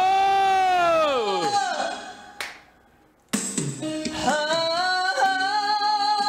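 A trot song sung over a backing track: a long held vocal note swells up and falls away as the music fades out about two seconds in. After about a second of near silence, the backing track and singing start again abruptly.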